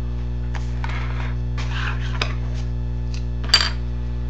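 Hands handling a hockey card box and picking up a small metal blade: two spells of soft rustling, a light tap about two seconds in, and a sharp metallic click with a brief ring near the end, over a steady low hum.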